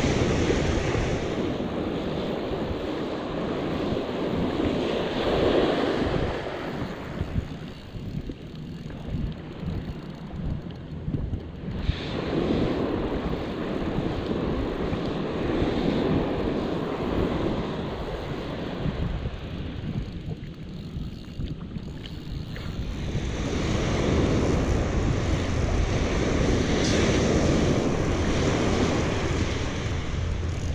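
Small surf breaking and washing up the beach close by, in surges that swell and fade every several seconds, with wind buffeting the microphone as a steady low rumble.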